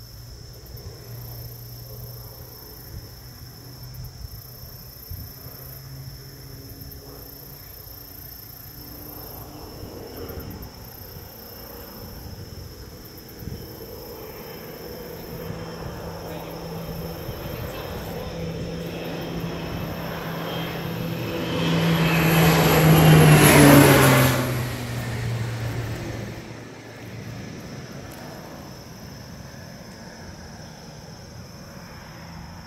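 Crop-dusting airplane's propeller engine making a low pass overhead: a drone that grows steadily louder, peaks about 23 seconds in with its pitch dropping as the plane goes by, then fades quickly.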